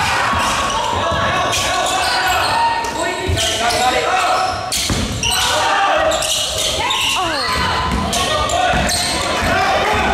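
Sounds of a youth basketball game in a gym: many voices from players and spectators echoing in the hall, a basketball bouncing on the court, and short squeaks of sneakers about seven seconds in.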